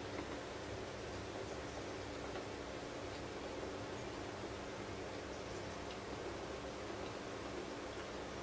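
Low steady hum with a few faint clicks as the push buttons on a BGA rework station's temperature controller are pressed to change its set value.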